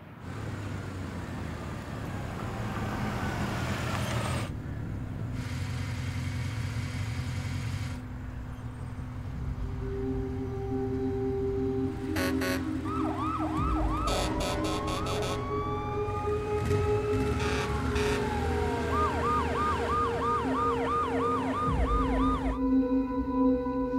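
Low vehicle engine rumble, then from about halfway a siren joins in: long rising and falling wails, turning near the end into a fast yelp of rapid up-and-down whoops, about three or four a second.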